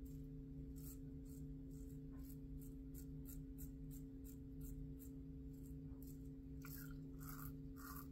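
Merkur 34C double-edge safety razor with a fresh Wilkinson Sword blade scraping through lathered stubble on the upper lip in short, quiet strokes, about two a second and a little quicker near the end, over a steady low hum.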